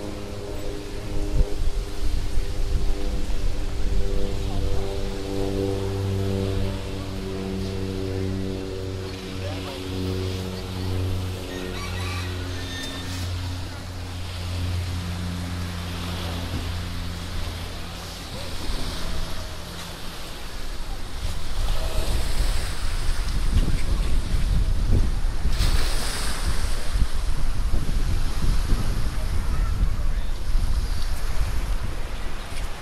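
Sea wind buffeting the binaural microphones, with small waves washing against a concrete pier. For the first two-thirds a steady low hum with even overtones runs underneath; it fades out around twenty seconds in, and from then on the wind rumble grows louder and gustier.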